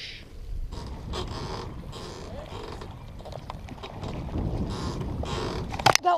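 Steady low outdoor background noise with scattered faint knocks, and one sharp click just before the end.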